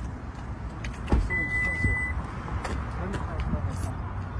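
A sharp click about a second in, then a single steady high electronic beep lasting just under a second, from the parked SUV. Scattered clicks and knocks follow over a low steady rumble.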